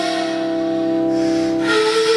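Bulgarian kaval, an end-blown wooden flute, playing a long held low note that steps up to a higher note about one and a half seconds in.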